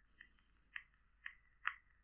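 A pod vape being drawn on: a faint, steady high hiss from the firing coil and the airflow, with a few soft crackles of e-liquid on the coil.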